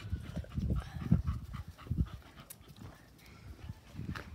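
Handling noise from a phone camera being passed from one person to another: irregular low thumps and rubbing on the microphone, heaviest in the first two seconds and then dying down.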